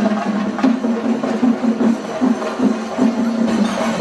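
Loud festival procession music: fast, dense drumming and percussion over a held low note.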